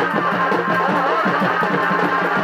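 Purulia Chhau dance music: fast, driving drum rhythm with pitch-bending strokes and a sustained melodic line above it.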